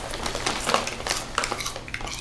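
Potato chips crunching, with the chip bag rustling: several irregular, crisp crackles.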